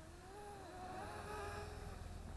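Syma X11 mini quadcopter flying overhead, its motors and propellers giving a faint buzzing hum whose pitch wavers as the throttle changes. It grows louder about halfway in.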